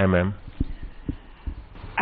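A man's voice ends a question in Hindi, then a pause holding a few soft low thumps, the handling noise of a handheld microphone being turned toward the next speaker.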